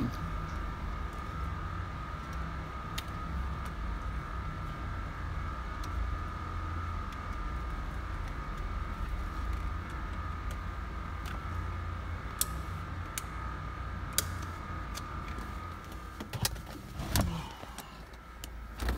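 A steady low hum with a thin steady whine inside a car's cabin, with scattered light clicks and rattles of a car key being handled; a few louder handling noises come near the end.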